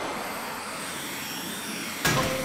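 Cartoon sound effect of rocket thrusters on a pair of flying robots: a steady rushing jet hiss.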